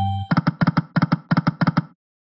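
Video slot game sound effects: a short electronic chime fading out at the start, then rapid clusters of clicks as the reels spin and stop, cutting off just before the end.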